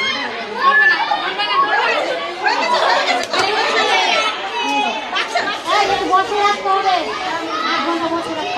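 A young girl crying and wailing as she gets a vaccine injection, over several women chattering around her.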